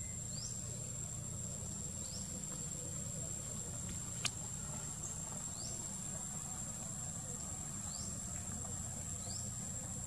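Steady high-pitched insect drone with short rising chirps every second or two, over a low rumble of outdoor background; a single sharp click about four seconds in.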